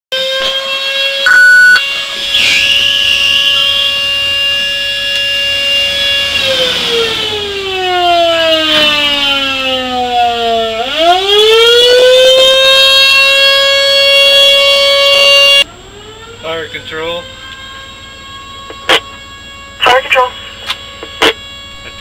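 Emergency siren sounding at a steady high pitch, then winding down over about four seconds and quickly back up to pitch and held, with a short loud tone just before the wail. The siren cuts off abruptly about two-thirds of the way through, leaving a much quieter stretch with several sharp clicks.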